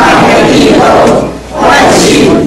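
A congregation reciting the Presbyterian Church in Taiwan's Confession of Faith aloud in unison in Taiwanese, many voices speaking together, with a short pause between phrases about one and a half seconds in.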